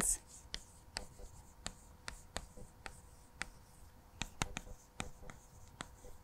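Chalk writing on a chalkboard: a run of short, irregular taps and scratches as letters are written.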